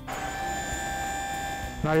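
Battery-powered electric motor of a Hewitt hydraulic boat-lift pump switching on suddenly and running with a steady whine as it drives the lift down.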